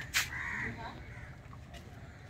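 A sharp knock, then right after it a single short bird call lasting about half a second, with a faint tap near the end.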